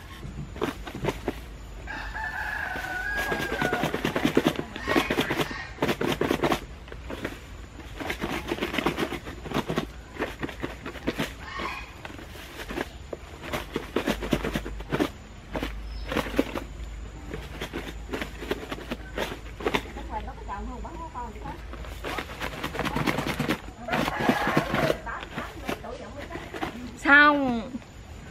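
Tamarind pods and sugar rattling and swishing inside a lidded plastic box, shaken in repeated bouts to coat the fruit evenly with sugar. A rooster crows in the background.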